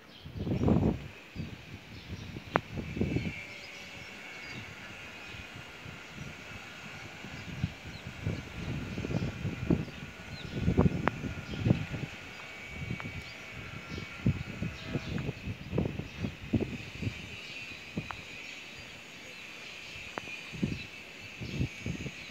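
Outdoor rural ambience: a faint, steady high chorus of animal calls, broken by irregular low gusts of wind buffeting the microphone.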